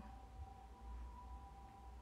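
Near silence: room tone with a low hum and two faint steady high tones.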